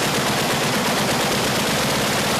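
Oerlikon GDF twin 35 mm anti-aircraft cannon firing in continuous rapid fire, a fast unbroken string of shots.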